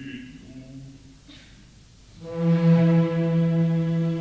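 A low bass voice's operatic phrase trails off in the first second. After a short lull, the orchestra comes in about halfway through with a loud, steady held brass note.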